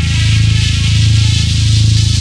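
Electronic music: a sustained, buzzing low synth bass tone with a steady hiss of high noise above it, no beat.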